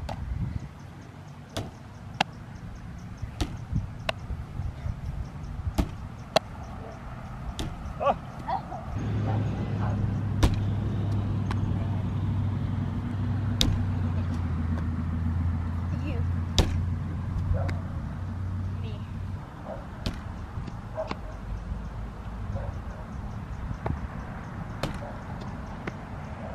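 A baseball repeatedly smacking into leather gloves and hitting a pitch-back rebounder net, as sharp pops at irregular intervals. A low steady hum comes in about nine seconds in and fades out near nineteen seconds.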